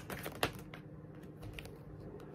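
Tarot cards being handled in the hands: a few faint, light clicks as cards are slid and tapped against the deck, the clearest about half a second in.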